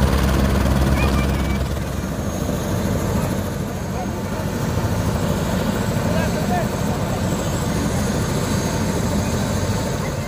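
Helicopter running on the ground with its rotor turning: a steady low rotor beat, heaviest in the first couple of seconds, under a thin high turbine whine.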